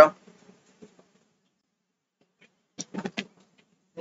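A pause of near silence, then a few short mouth clicks and brief voice sounds from the teacher a little under three seconds in.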